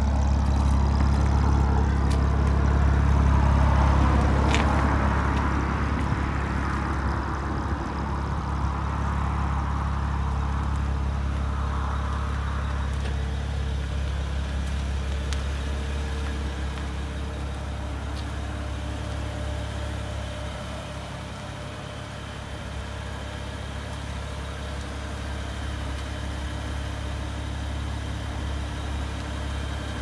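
BMW Z4 sDrive35is twin-turbo straight-six idling steadily. A broader rushing noise swells and fades during the first several seconds.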